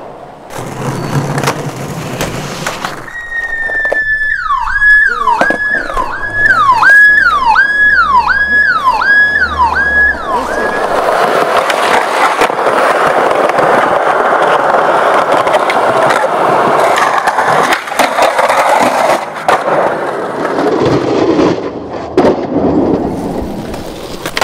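Skateboard wheels rolling hard on concrete and pavement, with grinding along a ledge and sharp clacks of the board. For the first half a music track plays over it, a falling electronic tone repeated eight times above a stepped bass line.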